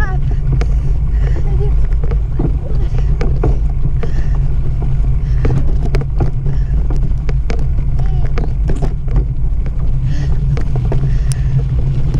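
Steady low rumble of wind buffeting and tyre noise on a camera riding a mountain bike across grass and dirt. Faint voices and light clicks come through above it.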